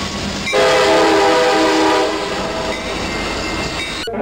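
Passenger train's horn sounding one loud blast, a chord of several steady tones, starting about half a second in and fading out after about two seconds, over the steady rumble of the train rolling past.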